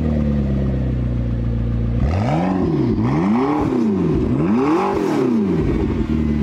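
A vehicle engine idling steadily, then revved three times, its pitch rising and falling with each rev.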